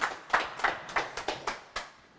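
A group of people clapping their hands together in a steady beat, about three claps a second, getting fainter toward the end.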